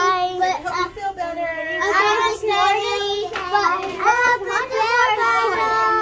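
Young children's high voices calling out in long, drawn-out sing-song tones, several overlapping at once.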